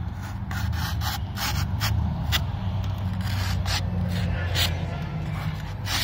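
Hand-forged kukri blade slicing into thin cardboard in a string of short cuts, a test of the edge after chopping through bone: the edge has not rolled. A steady low hum runs underneath.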